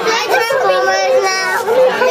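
Several children's voices talking and calling over one another, loud and overlapping.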